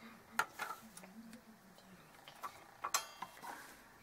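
Small hard objects clicking and clacking on a wooden desk as a circuit board and tools are handled: a few sharp taps, the loudest about half a second in and again near three seconds.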